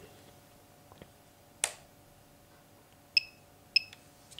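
A single sharp click as the radio transmitter is switched off. Near the end come two short, high electronic beeps about half a second apart, over a faint steady hum.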